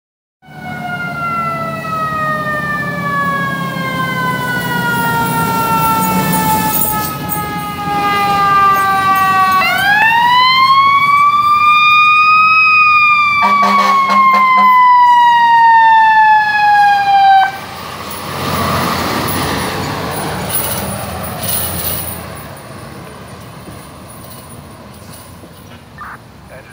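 Fire apparatus siren wailing: its pitch falls slowly, rises once about ten seconds in, falls again, and cuts off abruptly about seventeen seconds in. After that the truck's engine and road noise are heard passing and fading away.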